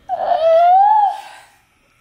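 Domestic cat meowing at the door to be let outside: one long meow, rising then falling in pitch.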